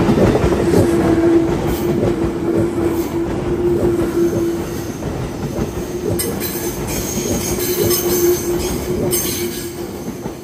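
A JR 211-series electric train passes at close range, its wheels clattering over the rail joints with a steady squeal through the pass. The sound starts to fade near the end as the last car goes by.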